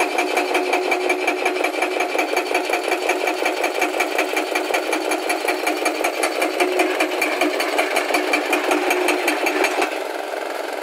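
Hydraulic breaker hammer on a Hyundai 220 excavator pounding rock in rapid, even blows, about eight a second. The hammering stops at the very end.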